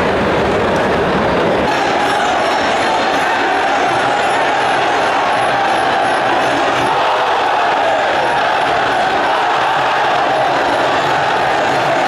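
Live Muay Thai ring music (sarama): a reedy pi java oboe playing a wavering, winding melody over steady crowd noise.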